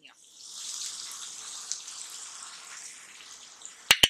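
Bottle-gourd (lauki) sabzi sizzling steadily in a hot non-stick pan, its water mostly cooked off, as a sharp click sounds just before the end.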